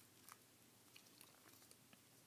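Near silence, with a few faint crinkles and clicks of folded paper being handled.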